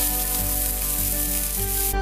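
Onions and garlic sizzling in a cast-iron skillet, a steady hiss that cuts off suddenly just before the end.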